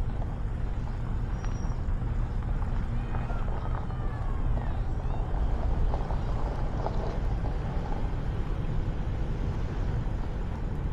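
Steady driving noise from the car carrying the camera at low speed: the engine running low and even with road noise. A few faint high chirps come through around the middle.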